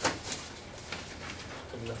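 A single sharp knock right at the start, followed by a few faint clicks, then a man's low voice beginning to speak near the end.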